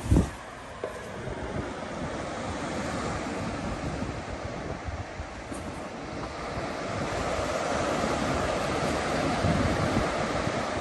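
Ocean surf washing into a rocky cove, with wind buffeting the microphone; the surf grows louder in the second half. A brief thump right at the start.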